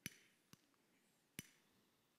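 Three sharp clicks of a handheld lighter being flicked to light a candle: two about half a second apart, the third nearly a second later, over near silence.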